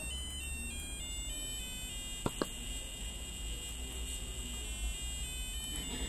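A micro:bit's built-in speaker beeping a continuous run of short electronic tones that step up and down in pitch. It is running a program flashed earlier and keeps sounding until new code is flashed to the board. Two sharp clicks come a little past two seconds in.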